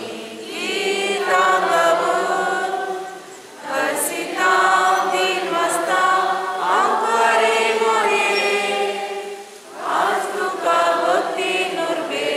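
A congregation singing a hymn together in long, held phrases, with short breaks for breath about three seconds and ten seconds in.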